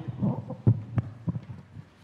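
Handling noise on a handheld microphone: a run of irregular low thumps and knocks as the mic is gripped and moved about.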